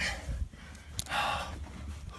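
A man's breathing: a click about a second in, then a sharp breathy gasp or exhale lasting about half a second, over the low rumble of a handheld phone being moved.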